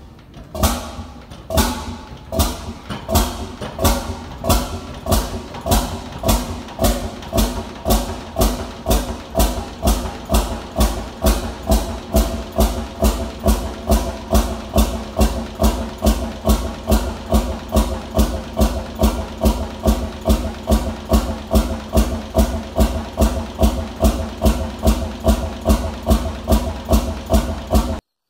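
Fairbanks Morse Model Y hot-bulb semi-diesel stationary engine starting from cold and running. Its sharp exhaust beats come unevenly at first, then settle into a steady rhythm that picks up slightly to about two to three beats a second.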